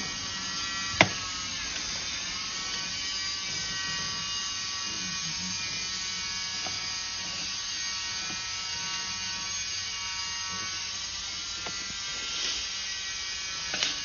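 Steady electric buzz with a high, many-toned whine from the sewer inspection camera rig while the camera is pulled back through the pipe. The whine dips briefly in pitch, and a single sharp click comes about a second in.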